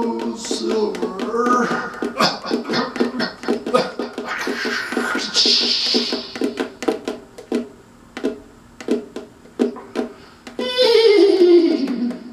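Quick, steady percussive taps on a ukulele's body, without touching the strings, imitating a horse galloping. Over them come vocal sound effects: rising voiced sounds at the start, a hiss about four to six seconds in, and a falling vocal cry near the end.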